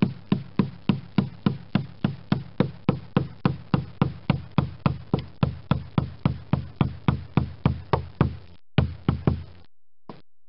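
A wooden mallet striking a caulking iron in a steady rhythm of about three to four knocks a second, driving caulking into the seams between the pine planks of a wooden boat hull. There is a short break near the end, then a few more strikes.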